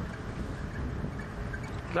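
Open game-drive vehicle driving along a dirt track: a steady low rumble of engine and tyres.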